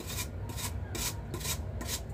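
Kitchen knife blade scraping the skin off a lotus root in short repeated strokes, about two to three a second.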